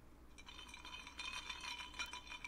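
A glass of water clinking as it is picked up off the table and raised to drink. A rapid run of small clinks with a ringing glassy tone starts about half a second in.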